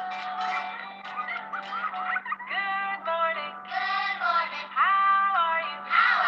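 Children's good-morning song: a voice singing over a backing track, with several long held notes in the second half.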